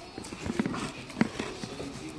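Footsteps of two people walking across a stage: a few irregular knocks, the loudest about a second and a quarter in.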